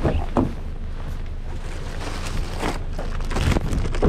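Footsteps and handling knocks and rustles from carrying plastic grocery bags, coming at irregular moments over a steady low rumble.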